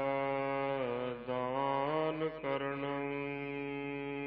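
Gurbani chanted by a single voice that holds long notes, wavering and sliding in pitch between about one and two and a half seconds in, over a steady drone.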